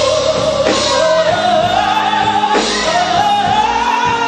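Gospel choir singing live with band accompaniment. A woman soloist on a microphone holds long notes that climb steadily in pitch over the backing, with occasional drum hits.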